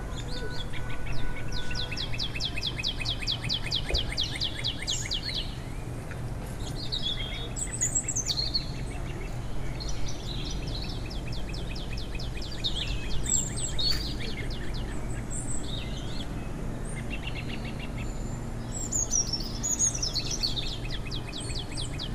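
Songbirds singing: several rapid, buzzy trills and short high chirps come and go throughout, over a steady low rumble.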